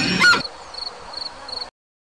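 A sheep flock, with a short bleat, that cuts off abruptly less than half a second in. Then crickets chirping, three short high chirps, before the sound cuts to silence.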